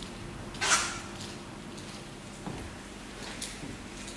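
A short swish of a paint-loaded sponge roller stroked across a canvas, just under a second in, followed by a couple of fainter strokes over a steady low room hum.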